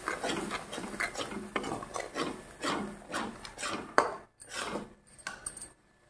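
Metal spatula scraping and stirring a thick masala paste around a metal kadai, about two strokes a second, with one sharper knock against the pan about two-thirds through. The stirring slows and stops near the end. The spices are being fried down with a little water until the oil separates.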